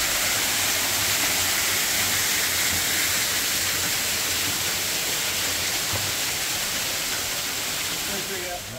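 Steady rush of a small waterfall splashing into its plunge pool in a rock box canyon.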